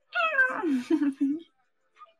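A loud meow: one long call that slides down in pitch and ends in a few short, low pulses.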